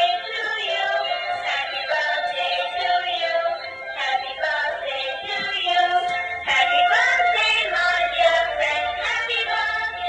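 Plush dancing cactus toy playing a song with singing through its built-in speaker, continuously.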